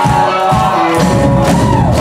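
Live rock band playing electric guitars and drum kit. About a second in, the drum beat gives way to a held low chord, and a guitar note slides down in pitch near the end.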